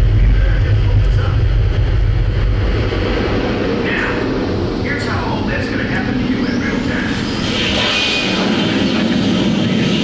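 Deep rumble of a solid rocket booster firing, played loud through a hall's sound system, easing off after about three seconds. A rushing hiss rises near the end.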